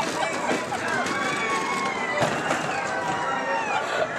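Indistinct voices of a crowd of riders and onlookers, several calls and shouts overlapping without clear words.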